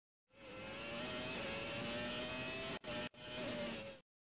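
Car sound effect: a vehicle engine running with a slowly rising pitch. It fades in, cuts out briefly twice near the end and fades away.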